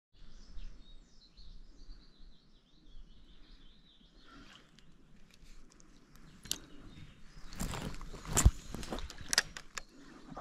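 A small bird singing a repeated high chirping phrase for the first four seconds or so, over outdoor background noise. Then comes a run of sharp clicks and knocks, the loudest thump about eight and a half seconds in.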